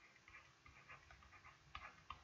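Near silence, with faint scattered scratchy ticks of handwriting being drawn onto a digital board.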